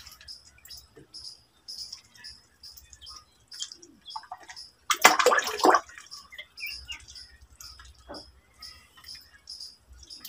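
Ducklings peeping, short high chirps repeating a couple of times a second, with a brief loud burst of splashing water about five seconds in.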